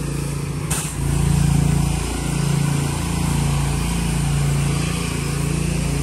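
Pressure washer's engine running steadily while the wand sprays chemical pre-treatment onto concrete, with a brief break in the sound just under a second in.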